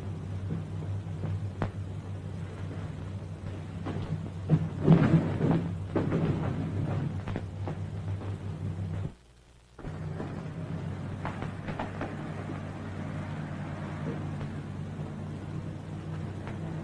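Steady hum and crackle of an old optical film soundtrack, with scattered clicks. A louder, noisier clatter comes about five seconds in. Shortly before the middle the track drops out briefly to near silence.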